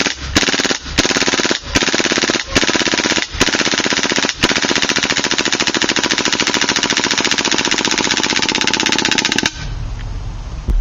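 KWA MP7 gas blowback airsoft submachine gun dry-firing on full auto with an empty magazine, the bolt cycling in rapid clicks. Several short bursts come first, then one long unbroken burst of about five seconds that stops shortly before the end as the gas in the magazine is used up.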